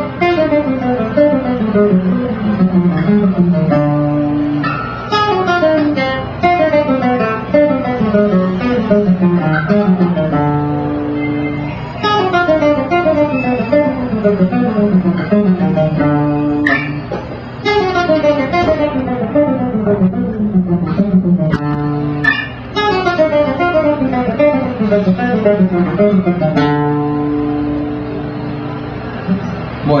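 A guitar plays fast descending runs on the diminished scale, one phrase after another. Several runs end on a held low note.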